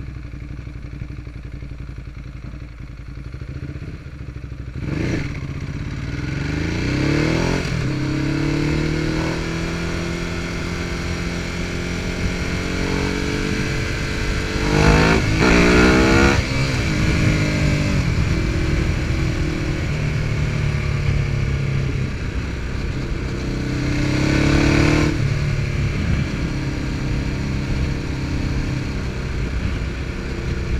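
Ducati Hypermotard's L-twin engine idling low, then pulling away and accelerating, its pitch climbing through the gears about five seconds in, with harder surges of acceleration near the middle and again a few seconds before the end. Heard from a chest-mounted camera, with wind noise under the engine.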